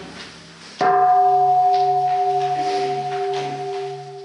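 A bell struck once about a second in, ringing on with a steady tone that wobbles slowly in loudness as it sustains.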